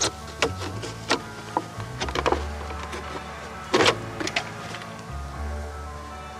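A plastic gallon milk jug being cut open with a small blade: a series of irregular sharp crackles and snaps as the plastic gives, the loudest a little under four seconds in. Background music with a steady bass plays underneath.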